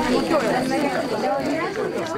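Several people talking at once, overlapping conversational chatter.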